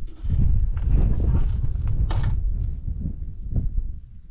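Wind buffeting the microphone with a rumble, broken by a few irregular knocks and crunches.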